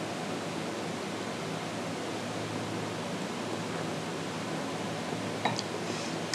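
A steady, even hiss of room tone, like a fan or air conditioner or a microphone's noise floor, with a couple of faint small clicks about five and a half seconds in.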